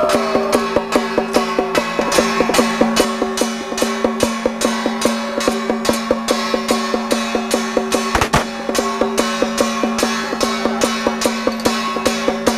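Traditional temple gong-and-drum percussion accompanying a Song Jiang martial troupe: a steady, driving beat of about four strikes a second over a continuous ringing tone. A single sharper knock stands out about eight seconds in.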